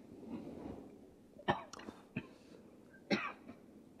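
A person coughing: two sharp coughs about a second and a half apart, with a smaller one between them.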